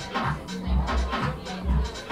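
Electronic music from a DJ set: a deep bass line repeating in a short loop under regular percussion hits.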